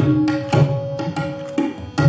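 Tabla solo: the dayan and bayan struck in spaced, ringing strokes about twice a second, with deep bass tones from the bayan. A steady held harmonium note sounds underneath.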